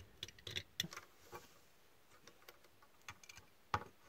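Faint, irregular small clicks and scrapes of metal tweezers and a tiny screw against a toy car's base as the screw is set in. The clicks come in a cluster at first, a few more later, and one sharper click near the end.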